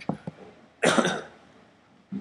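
A single cough about a second in, preceded by a few soft clicks.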